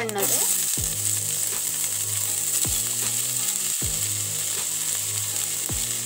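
Hot oil sizzling steadily in a stainless-steel kadai, with whole seeds frying in it.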